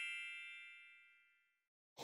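The dying tail of a shimmering chime sound effect, an intro sting: several bell-like tones ringing together and fading away within the first second and a half.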